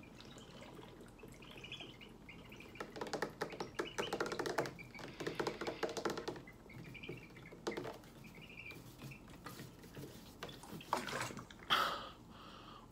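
Person gulping water from a large plastic water jug, swallowing in two main runs in the middle with shorter sounds near the end, the water sloshing in the jug.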